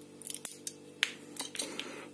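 Light metallic clicks and ticks of a steel pipe wrench and walnut shell being handled as the nut is set in the jaws: about half a dozen short, sharp clicks, faint, over a low steady hum.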